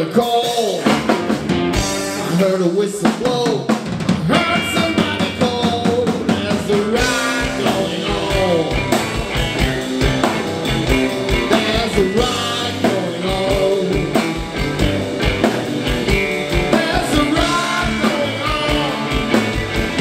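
A live blues-rock band playing an instrumental passage on drum kit, electric bass and electric guitars. The bass and kick drum come in about four seconds in, and the drums drive a steady beat from then on.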